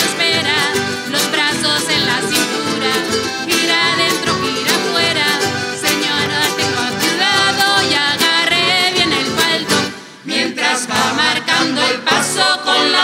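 Canarian folk string band playing live dance music: guitars and other plucked strings strummed in a quick rhythm, with singing. The music briefly drops away about ten seconds in, then starts again.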